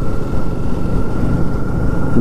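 Riding a motor scooter slowly through traffic: low rumble of the engine mixed with wind noise on the microphone, with a faint steady whine above it.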